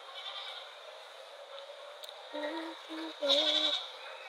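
A woman humming with her mouth closed: three short, level notes in the second half, the last one louder.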